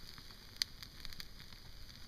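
Campfire of sticks and branches crackling faintly: scattered small pops over a low hiss.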